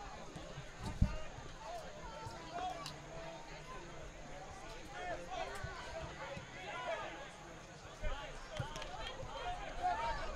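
Distant, scattered voices of players and spectators calling out around a soccer field. A sharp thump comes about a second in, and a smaller one about eight seconds in.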